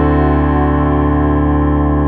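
A chord held on a keyboard synthesizer's electric piano sound, ringing on steadily with no new notes struck and fading only slightly.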